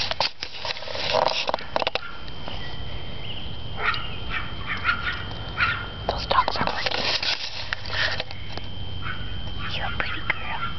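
Pomeranian puppies giving small whimpers and squeaks, with crackling rustles of tall grass throughout.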